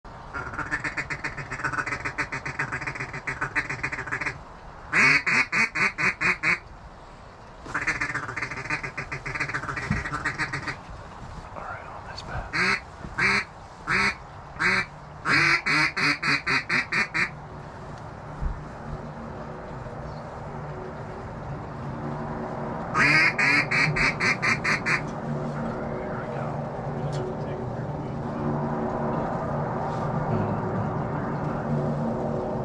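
Mallard duck call blown in runs of loud quacks: a fast descending run of about eight quacks, later spaced single quacks, then two more quick runs, with faster chattering calls in the first several seconds.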